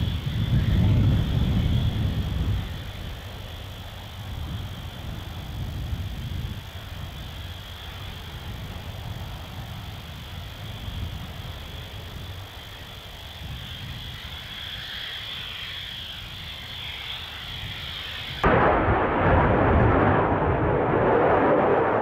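Military jet engine noise: a deep rumble, loudest in the first two seconds, then a steadier, quieter rumble with a thin high whine over it. About eighteen seconds in it cuts abruptly to a louder, harsher rushing noise.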